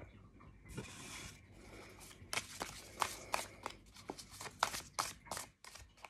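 A tarot deck being shuffled by hand: a soft rustle of cards about a second in, then a run of quick, sharp card clicks that stops shortly before the end.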